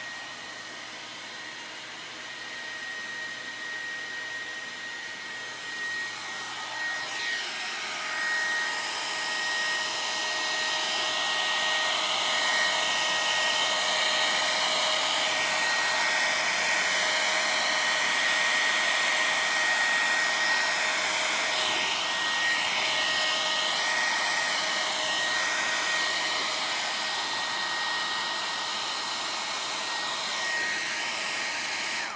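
Handheld heat gun blowing hot air across a painted surface: a steady rush of air with a thin, steady high whine. It grows louder about a quarter of the way in, then runs evenly.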